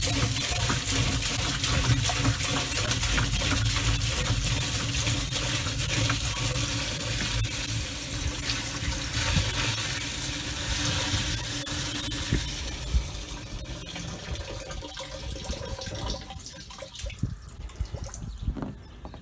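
Water poured from a large white plastic container into the open top of a plastic water butt: a steady splashing stream that thins and tails off near the end as the container empties.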